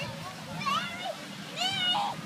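A child's high-pitched voice calling out twice, short wordless squeals, the second louder and longer.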